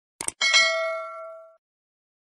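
Subscribe-button sound effect: two quick clicks, then a notification bell ding that rings for about a second and fades away.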